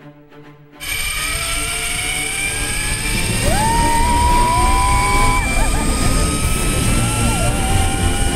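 Zip-line trolley pulleys running along a steel cable, starting suddenly about a second in: a steady whine that slowly rises in pitch as the rider speeds up, over heavy wind rush on the microphone. A person lets out two long, held whoops during the ride.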